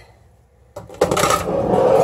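A large glass whiskey bottle slid across the countertop: a light knock about three-quarters of a second in, then a scraping sound about a second long.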